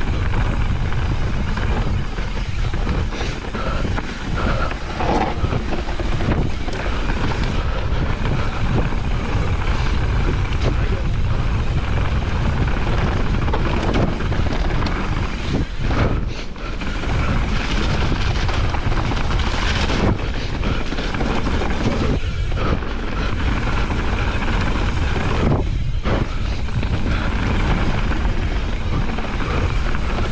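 Mountain bike riding fast down a dirt trail: constant wind buffeting the microphone over the tyres rumbling on the dirt, with the bike rattling and knocking over bumps.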